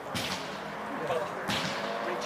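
Footballs being kicked: two dull thuds about a second and a half apart, each trailing off briefly.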